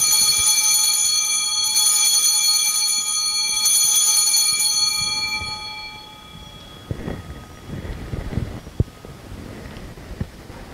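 Altar bells rung three times, a cluster of high metallic tones ringing out and dying away over about six seconds. They mark the elevation of the chalice just after its consecration at Mass.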